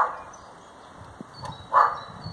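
A dog barking in short barks, one at the start and one near the end.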